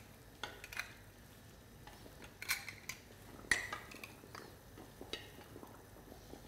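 Metal jar lids being dropped into a stainless steel pan of boiling water, clinking against the pan: several light, separate clicks, the loudest about three and a half seconds in.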